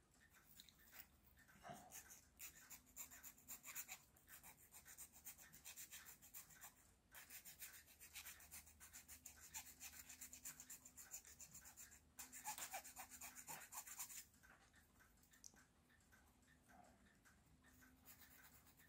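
A needle file rasping in short, quick strokes between the coils of a 3D-printed plastic spiral spring, clearing out leftover print material. The strokes are faint and stop about fourteen seconds in.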